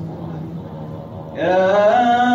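Men's voices in Sufi devotional chanting: a low held tone, then about one and a half seconds in a solo male voice comes in louder on a long sung note.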